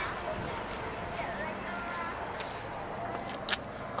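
Quiet outdoor background noise with a few faint, distant chirps and light clicks; one click is a little louder about three and a half seconds in.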